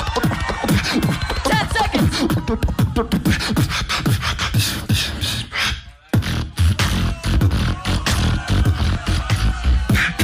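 Live beatboxing into a handheld microphone over a PA: a fast, dense run of mouth-made percussive hits with falling, sweeping bass tones. About six seconds in it breaks off for a brief moment of silence, then comes back with heavier deep bass.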